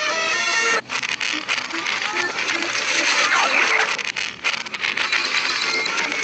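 Cartoon soundtrack played backwards: music that cuts off under a second in, then a dense jumble of reversed sound effects and squeaky, voice-like cartoon sounds with short pitch glides.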